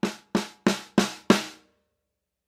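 Snare drum fitted with PureSound Custom Pro 24-strand steel snare wires, struck with sticks: five evenly spaced strokes, about three a second, each louder than the last, the wires sounding after each hit. The last stroke comes about a second and a half in.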